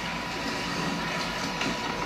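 A pause in a talk: steady hiss and room noise with a faint high steady tone.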